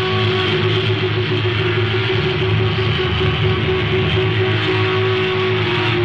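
A live hard rock band playing loud, with one long held note sustained through most of the passage and ending near the end. It is heard through a muffled, low-quality audience recording.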